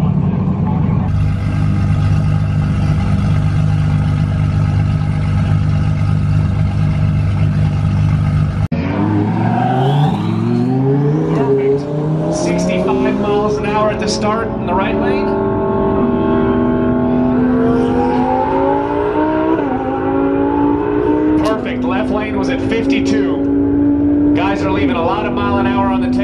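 Drag race cars' engines: a steady drone at first, then the engines accelerating hard down the strip, their pitch climbing with several drops at gear changes.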